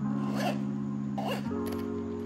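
Soft background music of sustained chords, the chord changing about halfway through. Over it, two short rasping sounds as the headphones' black zippered carrying case is handled.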